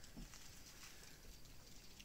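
Near silence: faint background hiss with a few soft ticks of phone handling about a quarter of a second in.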